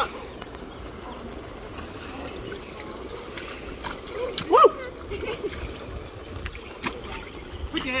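Water from an inflatable shark splash pad's sprinkler jet spraying up and pattering steadily back into the shallow pool, with splashing from feet in the water. A brief high voice cry about halfway through is the loudest sound.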